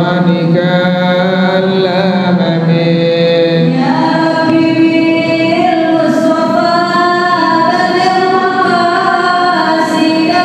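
A man singing an unaccompanied Arabic devotional chant into a hand-held microphone, in long held, ornamented notes that step up to a higher phrase about four seconds in.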